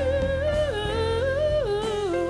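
A woman singing held notes with vibrato into a microphone. The melody steps down, rises again and falls near the end, over low upright bass notes.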